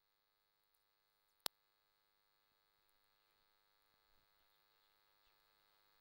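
Near silence: a faint, steady electrical hum, with one sharp click about a second and a half in.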